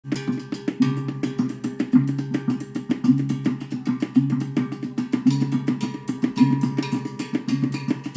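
Tribal-style party drumming: a fast, steady rhythm of drums and wooden knocks, with a low drum pattern repeating about once a second.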